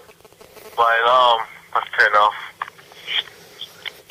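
Thin, tinny voice-like phrases from a mobile phone's speaker during a wake-up call, two short stretches in the first half, with low rustles between them.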